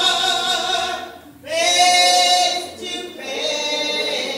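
Slow sung music, largely a cappella, with long held notes; it breaks off just over a second in and comes back with a loud held note.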